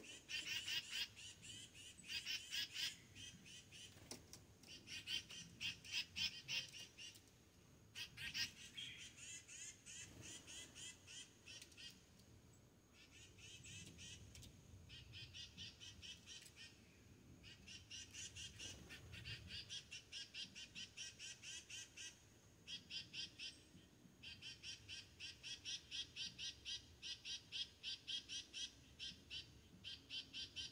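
High, rapid chirping calls from an animal, coming in trains of a second or two with short pauses between them and repeating all through.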